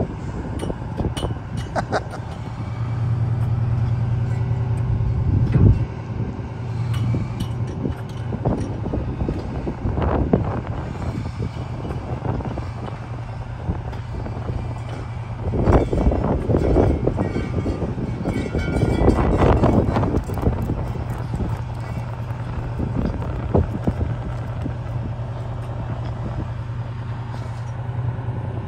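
Fire truck's diesel engine running steadily while its aerial ladder and platform are lowered and retracted onto the truck. There are a couple of louder swells partway through.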